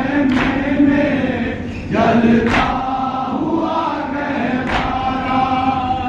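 A group of men chanting a noha, a mourning lament, together. A sharp slap of matam, hands striking chests, cuts in about every two seconds.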